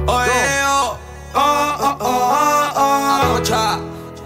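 Live band playing the instrumental intro of a slow love song: sustained keyboard chords with bending lead notes over a steady bass, which drops out briefly about a second in and shifts to a new note after about three seconds.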